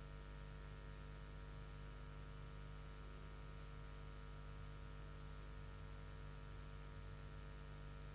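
Faint steady electrical mains hum with a low hiss, unchanging throughout; nothing else is heard.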